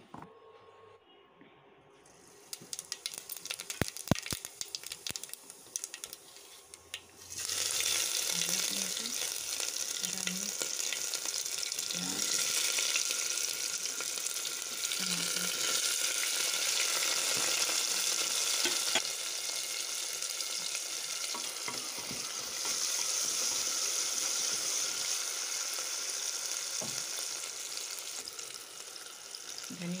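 Onions and garlic frying in hot oil in an aluminium pressure cooker: a steady sizzle that starts suddenly about seven seconds in. Before it come a few clinks and knocks of utensils.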